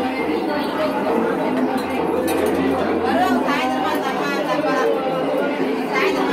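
Crowd chatter: many people talking at once, a steady babble of voices.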